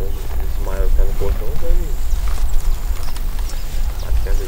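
A voice speaks briefly about a second in, over a steady low rumble, with a few light knocks near the middle, while cattle lick salt at a wooden trough.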